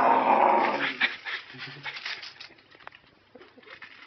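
A man lets out a loud, growling roar, then crunches a mouthful of Pringles potato crisps, with quick crackling crunches for a second or two and scattered smaller crunches after.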